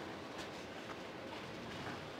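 Faint, steady murmur of an arena crowd, with no clear single event standing out.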